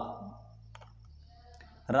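A pause in a man's speech: his word trails off, then low room hum with a few faint, short clicks a little under a second in, before his voice comes back at the very end.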